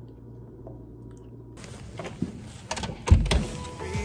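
Handheld phone microphone rubbing and bumping against a jacket, with scattered knocks and one loud thump about three seconds in. It follows a quiet stretch of room hum in the first second and a half.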